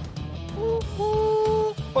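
A voice imitating a little boat's horn: a short held toot, then a longer one about a second in, over background music.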